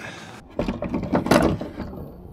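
A burst of metallic clicking and clattering, like mounting hardware being handled and knocked about, starting about half a second in and lasting roughly a second and a half.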